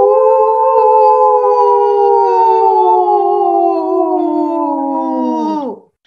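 A person's voice doing one long ghostly howl, an 'oooo' held for about six seconds, slowly sinking in pitch and then sliding sharply down and out just before the end.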